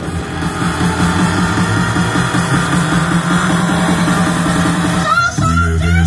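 Loud dance music with a steady beat playing for the dancers; about five seconds in it breaks off briefly into a few gliding high tones.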